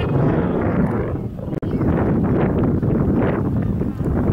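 Wind buffeting the microphone outdoors, a steady noise with a brief sharp dropout about a second and a half in where the recording cuts.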